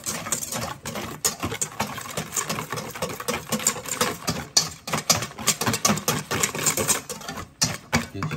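Wire whisk beating a thin liquid marinade in a stainless steel bowl: a rapid rhythmic clatter of the wire loops against the metal sides, with splashing.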